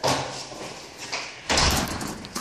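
Rustling and bumping of the phone as it is handled, loudest from about one and a half seconds in, after a sudden noisy burst right at the start.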